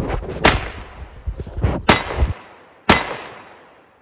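Three gunshots, each sharp and followed by a long echo that dies away. The shots come about half a second in, near two seconds, and near three seconds.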